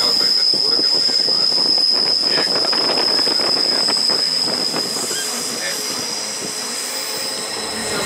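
Wheels of a metre-gauge Bernina line train squealing in one steady high note over the noise of the train running. This is typical of flange squeal on the line's tight curves.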